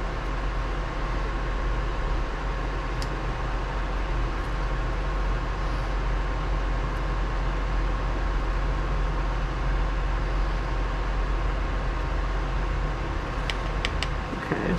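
Steady whirring hum of a running fan with a faint steady tone in it, and a few faint light clicks near the end.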